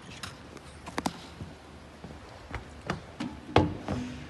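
A handful of irregular knocks and taps, footsteps and handling of a phone as it is carried; the loudest is a sharp knock about three and a half seconds in.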